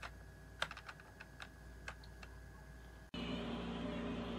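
Computer keyboard keystrokes: about ten sharp, irregularly spaced clicks over the first three seconds. Near the end the sound cuts abruptly to a steady low hum.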